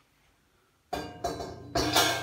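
An 18-inch crash cymbal knocking and ringing as it is handled and set back onto its stand over a small metal plate; quiet at first, the ringing starts suddenly about a second in, with a heavier knock near the end.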